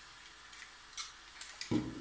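A few faint, sparse clicks from scissors and a 3D-printed plastic pistol being handled over low room tone, about three small ticks spread through the second.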